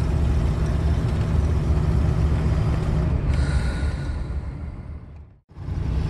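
Motorhome engine and road rumble heard from inside the cab while driving, steady and low. About five seconds in, it fades out to a brief silence and then comes back.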